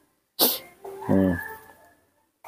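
A man coughs: a sharp burst about half a second in, followed by a short, low, falling voiced sound from his throat.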